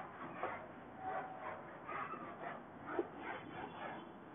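Whiteboard marker writing on the board: faint, quick scratching strokes with a few short squeaks.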